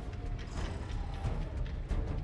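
A deep, steady rumble of a large spaceship from a film soundtrack, under quiet background score music, with a sharp click near the end.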